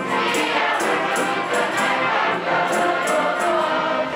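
Mixed youth choir singing a traditional South African song with a symphony orchestra of strings and woodwinds accompanying.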